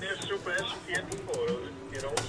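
People talking indistinctly, with a few faint clicks.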